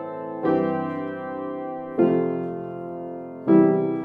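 Upright piano playing slow block triads with both hands, three chords struck about a second and a half apart, each left to ring and fade. They are major and minor triads of a chord progression in C major, played in different voicings.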